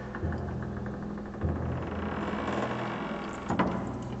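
Dramatic drama-series score with no dialogue: a low sustained drone under a rapid rhythmic pulse that builds, then a sharp percussive hit about three and a half seconds in.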